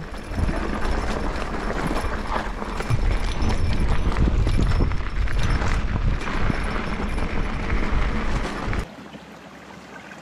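Full-suspension mountain bike descending a rough dirt singletrack: wind buffeting the camera microphone, with tyres crunching and the bike rattling over bumps. Just before the end it cuts off abruptly to the quiet, steady trickle of a small creek.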